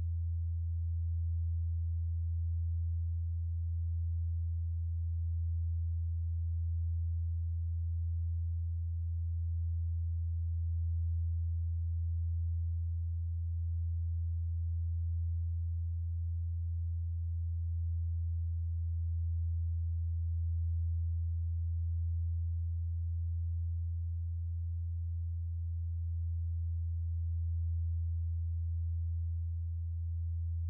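Empress Zoia Euroburo's Feedbacker patch, a reverb fed back into itself through a chain of bell filters, holding a single low, pure, steady drone tone with only a gentle slow swell in level.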